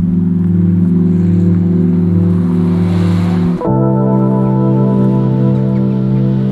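Slow ambient music of long held chords that moves to a new chord about three and a half seconds in, with a swelling hiss just before the change.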